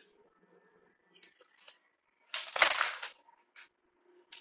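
A plastic water bottle being picked up and handled: soft knocks and shuffles, then a loud rustle lasting under a second about two and a half seconds in.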